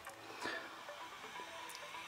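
Faint music from an FM broadcast station playing through the loudspeaker of a homemade FM radio built around a Philips TDA7088T chip, received on a short piece of wire as the antenna.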